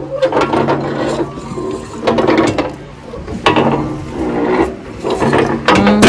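Metal playground seesaw creaking and squeaking at its pivot as it rocks up and down, in four repeated bursts about a second and a half apart.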